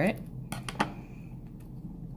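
Small scissors snipping through copper foil tape: a few quick, sharp clicks about half a second in.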